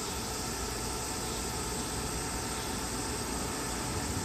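Steady background hiss with no distinct sounds in it: room tone or ambient noise.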